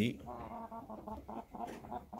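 Red junglefowl clucking softly in a quick run of short calls.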